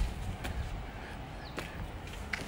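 Wind rumbling on the microphone during an outdoor walk, with a few faint taps.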